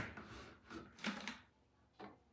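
Faint handling of a plastic food processor bowl and lid, with a brief knock about a second in.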